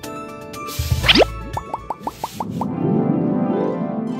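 Cartoon soundtrack music with sound effects: a fast rising swoop over a low thump about a second in, then a quick run of about eight short rising blips, then a bouncy melody.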